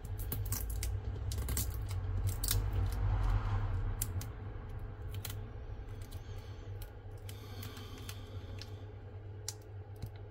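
Irregular small clicks and taps of fingers and plastic on an opened Samsung Galaxy S24 Ultra's frame and battery as it is handled during battery removal, thickest in the first few seconds, over a steady low hum.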